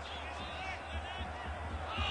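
Camcorder field sound at an amateur soccer match: a steady low rumble, with faint, distant players' voices calling out in the first half.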